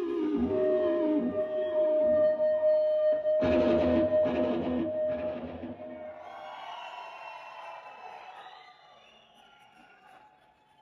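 Electric guitar solo on a red Red Special-style guitar through the concert PA: a note bent downward, then one long sustained high note, with a loud chord hit about three and a half seconds in, after which the sound rings out and fades away toward the end.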